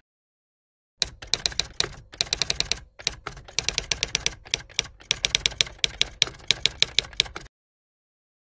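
Typewriter keystroke sound effect: rapid sharp clicks in uneven runs of several a second. They start about a second in and stop suddenly near the end, with dead silence on either side.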